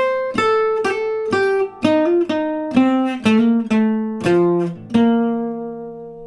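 Archtop jazz guitar playing a single-note lick, picked with hammer-on trill ornaments, about a dozen notes stepping in pitch. It resolves about five seconds in to a held B-flat that rings out and fades.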